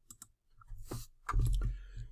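Two quick computer mouse clicks at the start, clicking a web link. They are followed by louder, duller knocks and rustling noise with a low thud.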